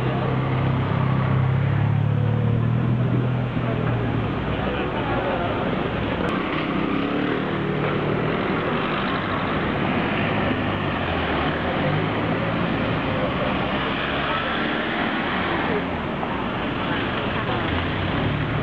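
Busy city street traffic noise with passers-by talking in the background; a vehicle engine hum passes close and is loudest in the first few seconds.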